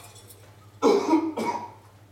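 A person coughing: two quick coughs about a second in.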